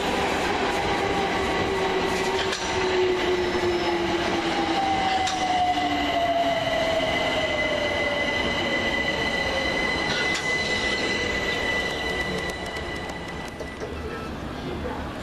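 London Overground Class 378 Electrostar electric train braking along the platform. Its motor whine falls slowly in pitch as it slows, over a steady rumble, with a thin high squeal held until near the end.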